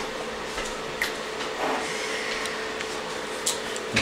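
A steady mechanical hum and hiss with a faint steady whine in it, and a few faint light taps.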